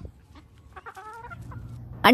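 A chicken clucking quietly: one short call about a second in.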